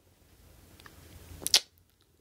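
A faint breath drawn in at the microphone, growing a little louder, then a single brief sharp mouth click about one and a half seconds in.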